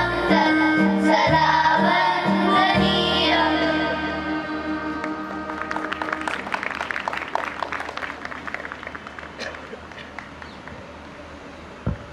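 A children's choir singing to an electronic keyboard, holding a final chord that ends about four seconds in. Scattered clapping follows, which fades away over the next several seconds.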